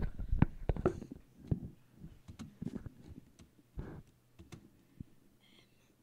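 Scattered clicks and knocks, thickest in the first two seconds and thinning out after about four seconds, over a faint steady hum.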